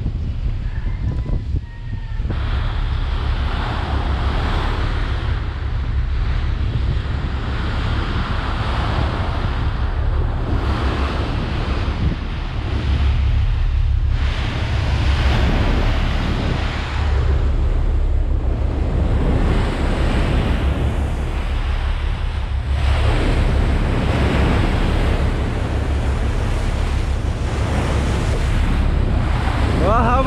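Sea water churning and splashing along the hull of a moving ship, swelling and easing every few seconds, with wind buffeting the microphone over a steady low rumble.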